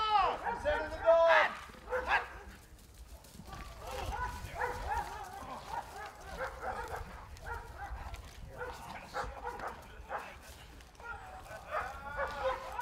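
A police patrol dog, a Belgian Malinois, barking repeatedly in agitation at a training decoy. The barks are loud in the first two seconds, fainter and scattered through the middle, and loud again near the end.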